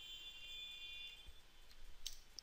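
Near silence: faint room tone, with a faint high-pitched whine that fades out about halfway through.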